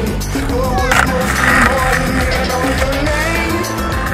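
Background music with a steady beat, over skateboard wheels rolling on concrete.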